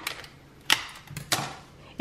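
Scissors cutting through thin plastic film: two sharp snips a little over half a second apart.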